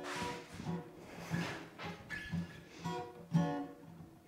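Acoustic guitar played softly and live, single plucked notes ringing out one after another about twice a second.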